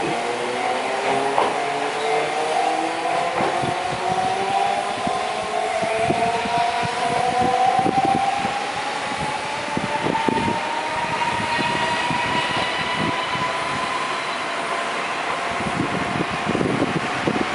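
Chikuho Electric Railway tram accelerating away from a station, its traction motors giving a whine that rises steadily in pitch and then levels off, with scattered clicks.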